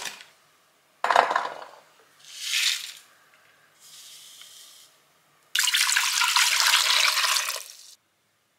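Vegetables and garlic cloves dropped into an empty pot, and a faint hiss of powdered stock poured in from a stick packet. About five and a half seconds in, tap water runs steadily into the pot for about two seconds, then stops.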